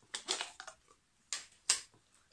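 Light clicks and taps from a crisp tube being handled: a quick run of small clicks in the first second, then two sharper single clicks in the second half.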